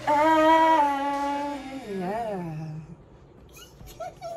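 A woman's voice holding one long hummed or sung note, then a short rise and fall and a long slide downward that fades out about three seconds in.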